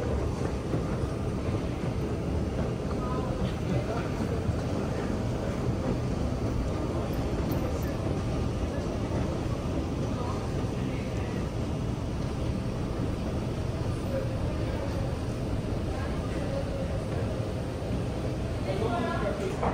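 Steady low rumble of a moving vehicle heard from inside, with faint voices in the background.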